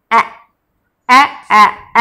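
Speech only: a woman saying the letter sound "a" four times as short, separate syllables, with silence between them.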